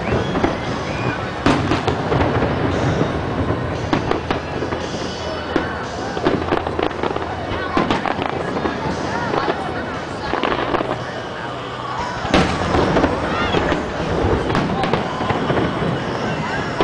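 Aerial fireworks shells bursting one after another in a dense run of bangs and crackles, with people talking in the background.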